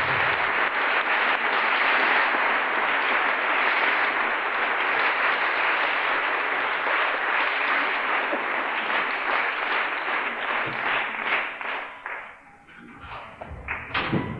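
Theatre audience applauding at the end of a musical number, thinning into scattered claps and dying away about twelve seconds in. A short thump near the end.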